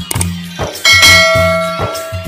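Subscribe-animation sound effects over background music with a steady beat: a couple of short clicks, then a bell chime that rings out a little under a second in and slowly fades.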